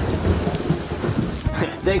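Heavy rain falling steadily with a low rumble of thunder, loudest right at the start.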